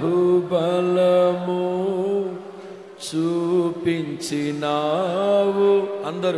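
A voice singing a slow Telugu Christian worship song in long, held notes that glide between pitches, with a short break about halfway through.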